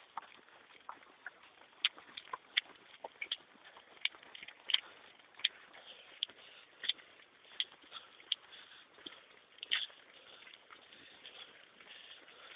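Running footsteps on a paved path, with a sharp tap about every three-quarters of a second.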